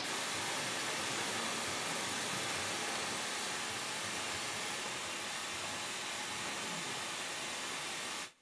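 Steady, even white-noise hiss from a courtroom sidebar masking system, switched on suddenly to keep a bench conference from being heard.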